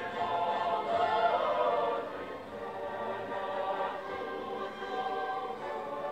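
A choir singing slow, sustained chords, several voices holding long notes together, briefly softer about two seconds in.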